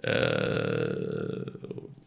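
A man's voice holding one long vowel, a drawn-out hesitation sound like "ehhh", for about a second and a half, then trailing off into a creaky, broken rasp.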